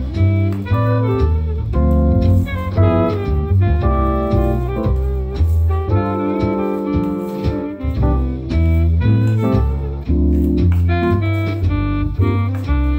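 Instrumental jazz-style background music with a bass line and a steady beat, loud enough to cover any sound of the spoon stirring the batter.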